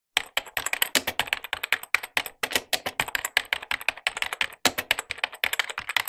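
Rapid typing on a computer keyboard, many keystrokes a second, with short pauses about two seconds and four and a half seconds in.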